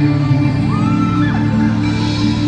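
Live pop concert music over a large venue's sound system, recorded from the audience: a loud, steady song intro of sustained held chords.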